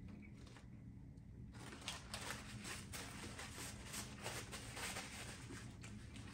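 Quiet handling noise: faint, irregular soft clicks and crackles from a cheeseburger being handled on its paper wrapper, starting about a second and a half in.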